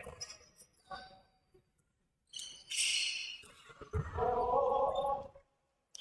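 Court sounds of an indoor basketball game in a gym hall: a couple of sharp knocks in the first second, a high squeak about two and a half seconds in, and a voice calling out from about four to five and a half seconds.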